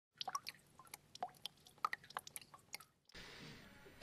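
A scatter of faint, irregular small clicks and ticks, followed from about three seconds in by a low steady hiss.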